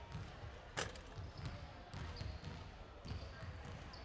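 Basketball bouncing on a hardwood court, one sharp bounce about a second in, over a low murmur of voices in the hall.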